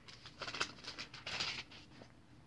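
Bible pages rustling as they are turned, in several short papery bursts.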